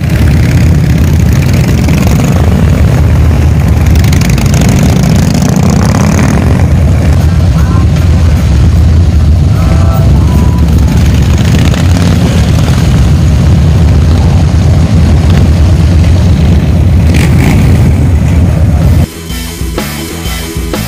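Harley-Davidson V-twin motorcycles running in a group ride, recorded live from a moving bike: a loud, steady low rumble of engines mixed with wind on the microphone. A few short tones sound near the middle.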